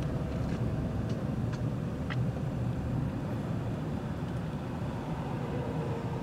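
Steady low rumble of a car in motion heard from inside its cabin: engine and road noise at freeway traffic speed, with a few faint ticks in the first couple of seconds.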